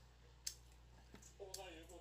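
Quiet room with a single sharp click about half a second in and a fainter click a little after a second, made while eating at the table. Faint speech begins near the end.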